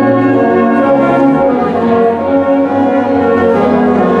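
Brass band of cornets, tenor horns and tubas playing held chords that change about once a second.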